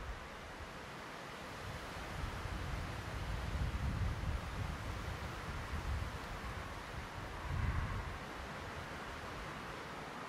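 Wind blowing on the microphone: a steady hiss with low rumbling gusts, strongest around four seconds in and again near eight seconds.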